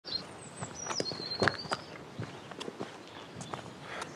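Footsteps on gravel, irregular steps, the loudest about one and a half seconds in. A thin high whistle that steps down in pitch runs through the first two seconds.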